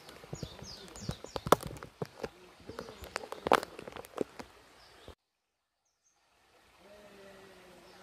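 A rapid, irregular run of sharp clicks and knocks for about five seconds, with a few short bird chirps near the start. The sound then cuts out completely for over a second before a faint steady background returns.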